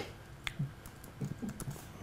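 Laptop keyboard being typed on: a scattering of light, irregular key clicks.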